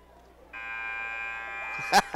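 Gym scoreboard buzzer sounding one steady, even buzz of about a second and a half, marking the end of a timeout.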